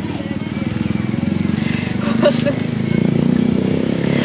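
A small motorcycle engine running as it passes, its pulsing note growing louder over about three seconds and then easing off.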